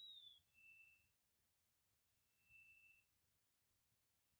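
Near silence, with two faint, brief, steady high-pitched tones about two seconds apart.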